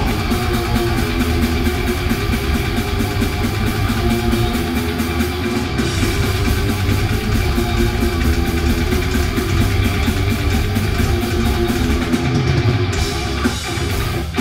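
Heavy metal band playing live: electric guitars, bass guitar and a drum kit driving a fast, steady beat.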